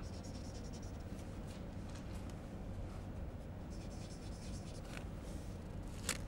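Chalk scratching on a chalkboard in two short stretches, one in about the first second and another around four to five seconds in, with a few light taps between, over a low steady room hum.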